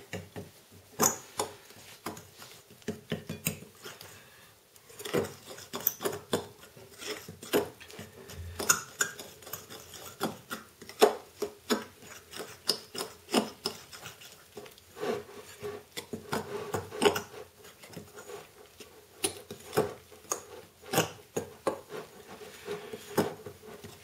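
A fork beating flour and eggs in a bowl: irregular clicks and scrapes of the tines against the bowl, several a second, with a brief lull a few seconds in.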